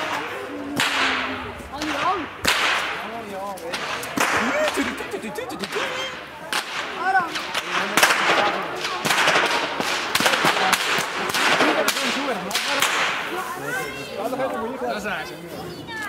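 Hemp-rope whips on wooden handles being cracked by several people at once: a steady run of sharp, irregular, overlapping cracks, with voices talking underneath.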